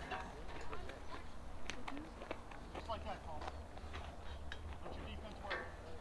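Indistinct, distant chatter of voices from players and spectators around a ball field, with a few sharp clicks scattered through it.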